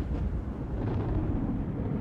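The fading tail of a deep boom sound effect on an intro logo: a low rumble dying away gradually.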